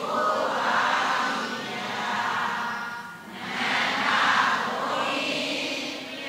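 A congregation of many voices chanting in unison a Burmese Buddhist recitation of homage to the Buddha, in two long swelling phrases with a short break about halfway.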